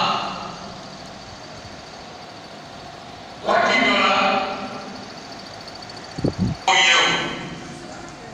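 A man speaking into a microphone and loudspeaker, in short phrases with long pauses between them. A brief low thump comes just before the second phrase.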